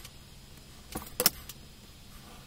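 Plastic set square being picked up and set down on a drawing board: a click about a second in, then a quick cluster of sharp clacks.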